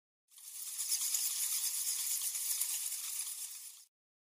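A high, fizzing hiss of noise for a logo intro. It fades in quickly and cuts off suddenly just before the end.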